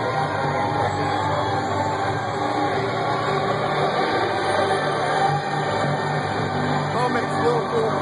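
Live industrial electronic music from the band's opening song, played loud through the venue's PA and recorded on a phone: a steady, low droning bed with dense layered sound above it.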